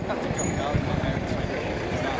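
Busy pedestrian street ambience: indistinct voices of passers-by over a steady low rumble.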